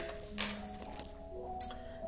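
Soft background music of long sustained tones, with a few light clicks from tarot cards being handled, the sharpest about one and a half seconds in.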